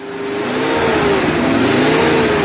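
Car engine revving as the sound effect of a logo sting, swelling in quickly at the start: a loud rushing noise with an engine note that rises and falls in pitch.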